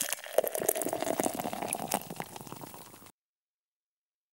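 Carbonated liquid fizzing with dense crackling, fading out over about three seconds and then cutting to silence.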